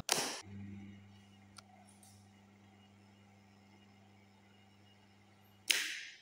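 A motor contactor clacks in as the selector switch is turned to position one, and a small single-phase induction motor runs with a steady low mains hum. Near the end comes a second clack as the contactor drops out, and the hum dies away.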